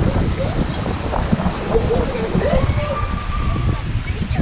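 Wind buffeting the microphone: a steady, loud low rumble, with faint voices mixed in underneath.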